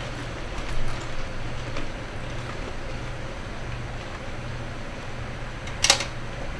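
A low steady hum, with a short sharp clink near the end from a small cup being handled.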